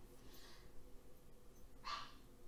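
A dog making faint breathy sounds over quiet room tone, with a soft one about half a second in and a slightly louder, short one near the end.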